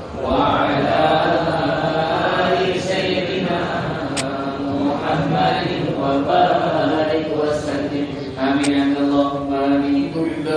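A man's voice chanting melodically in Arabic, drawing out long held notes that waver in pitch, with a short break just at the start.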